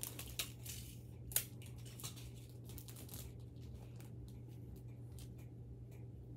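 Scattered small scratches and clicks of a marker writing a name on belongings and of the items being handled, with one sharper click about a second and a half in.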